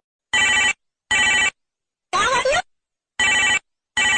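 Electronic ringtone-like sound effect: five short bursts of steady, buzzy stacked tones about once a second, each cut off cleanly with silence between. The middle burst slides upward in pitch.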